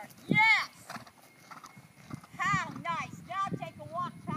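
A horse's hoofbeats on grass at a canter, with a heavier thud about a third of a second in, while a high-pitched voice calls out in short repeated bursts.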